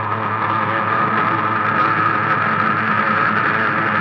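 Instrumental heavy psychedelic stoner rock: a sustained, droning wash of fuzz-distorted electric guitar over a held low bass note.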